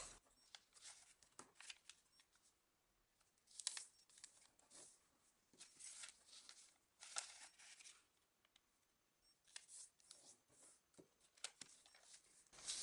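Faint, scattered rustles and soft swishes of a sheet of origami paper being turned, slid and creased by hand, a handful of short strokes with near silence between them.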